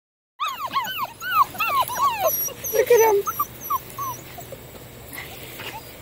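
A litter of tervoodle puppies yipping and whining together, many short high cries overlapping at different pitches, with a lower cry about three seconds in. The chorus thins to scattered faint yips after about four seconds.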